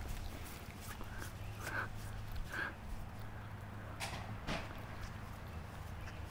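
Footsteps and small knocks as garbage is thrown into a bin, with two sharp clacks about four seconds in, over a low steady hum.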